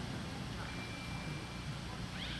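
Outdoor background noise: a steady low rumble with a faint, thin high whistle lasting about a second in the middle.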